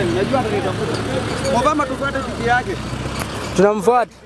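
Speech: a person talking over a steady low background rumble.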